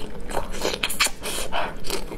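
Close-miked mouth sounds of eating: wet chewing, biting and lip smacking, in a run of short bursts.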